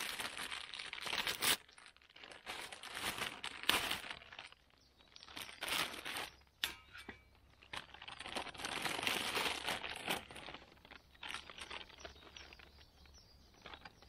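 Plastic food packaging crinkling and rustling as it is handled, in irregular spells with short pauses.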